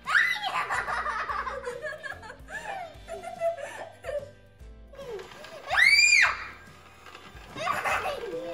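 Girls giggling and laughing, with a loud high-pitched squeal about six seconds in, over the faint steady hum of an electric hand mixer.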